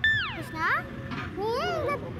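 A girl's voice calling out: a loud, high-pitched cry that falls steeply in pitch at the start, then a shorter rising-and-falling call near the end.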